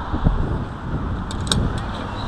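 Street traffic rumble, with a knock about a quarter second in and a few small clicks around a second and a half in.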